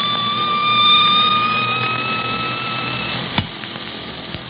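Shortwave radio sound effect: a high, steady whistle that rises slightly in pitch, then cuts off about three seconds in, followed by a sharp click, over a background hiss. It signals the incoming station coming on the air.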